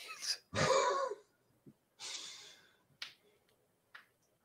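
A man's brief laugh, then a breathy exhale into the microphone and two faint clicks.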